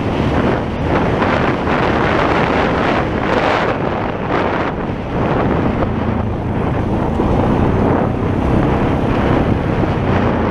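ATV engine running steadily while riding a dirt trail, under heavy wind rumble on the microphone.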